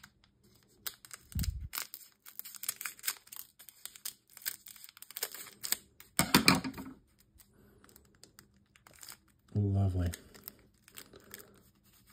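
Scissors snipping and foil booster-pack wrappers crinkling and tearing as Pokémon card packs are cut open, in a run of quick clicks and rustles.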